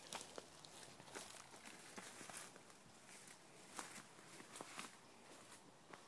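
Faint footsteps through brush and leaf litter, with scattered light crackles of leaves and twigs.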